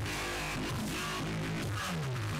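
Loud dubstep music played live by a DJ, with distorted bass notes sliding up and down in pitch over a steady beat.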